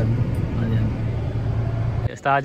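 Steady low rumble of a car heard from inside the cabin, with voices talking faintly over it.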